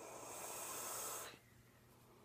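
A hard draw on a mechanical tube mod fitted with a 25 mm rebuildable dripping atomizer: a steady airy hiss of air pulled through the atomizer, cutting off sharply about a second and a half in.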